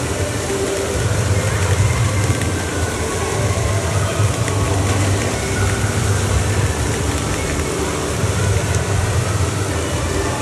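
Steady, loud din of an indoor water park: water spraying and running over a play structure, with a low rumble underneath.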